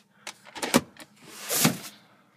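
A few sharp plastic clicks and knocks, then a short rubbing swell, as the rear seat's fold-down armrest and its pop-out cup holder are handled.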